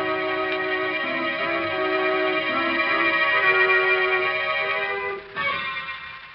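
Organ music bridge between scenes of a radio drama: held chords under a slowly moving line. A final chord is struck about five seconds in and fades out.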